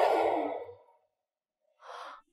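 A person's long, audible sigh at the start, fading out within the first second, then a short, softer noise near the end.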